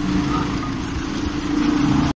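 A passenger van's engine idling steadily, with a constant low hum under road noise.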